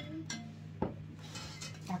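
Metal ladle clinking against an enamel soup pot as soup is ladled out: a few sharp clinks, the loudest a little under a second in, some with a brief ring.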